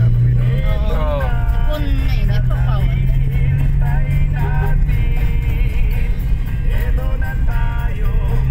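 Steady low drone of a car on the move, heard from inside the cabin, with music and voices playing over it.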